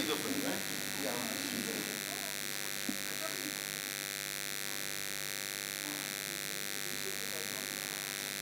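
A steady electrical hum and buzz, with faint, indistinct voices in the first second or so.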